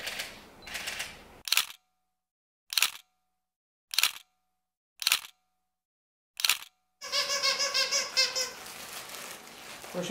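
Five single camera shutter clicks, roughly one a second, each sharp and brief, with dead silence between them.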